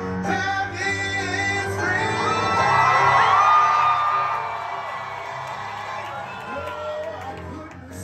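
Live street performance: a man singing into a microphone over keyboard accompaniment through a small PA. About three seconds in, the crowd whoops and cheers, the loudest moment, before the singing carries on more softly.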